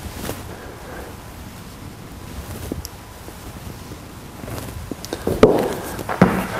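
Quiet gym room tone with a few faint clicks during push-ups, then near the end a few soft thumps and scuffs as a person gets up off a rubber gym floor.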